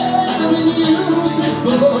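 A live rock band playing: drums with cymbals, bass guitar and acoustic guitar, with a man singing the melody into a microphone.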